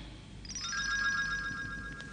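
Soft synthesizer tone with several steady pitches held together and a light shimmer, like a magical chime. It comes in about half a second in and holds to the end.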